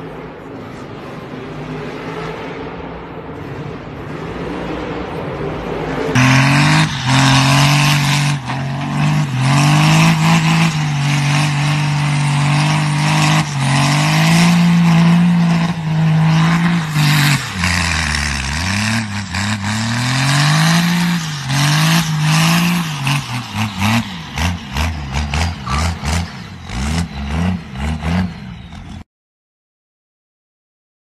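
A monster truck's engine in an arena for the first six seconds, then, suddenly louder, a diesel pickup's engine revving hard at heavy throttle, its pitch rising and falling several times in the second half, with hissing noise over it. It cuts off about a second before the end.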